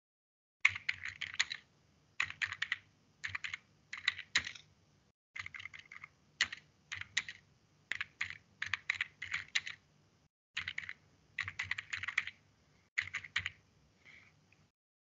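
Typing on a computer keyboard: short bursts of clicking keystrokes with brief pauses between words.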